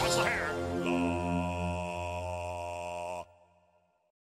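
Outro music ending: a falling sweep near the start settles into a held chord that fades a little and then cuts off suddenly about three seconds in, leaving silence.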